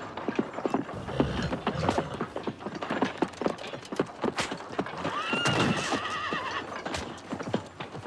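Horse hooves clattering with a stream of irregular knocks, and a horse whinnying, a wavering high cry that holds for about a second and a half from about five seconds in.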